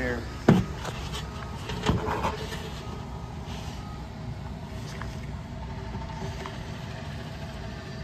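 Two sharp metal knocks, about half a second and two seconds in, from hands and a straight edge working on the belt pulleys of an exhaust fan, over a steady low rumble of outdoor traffic.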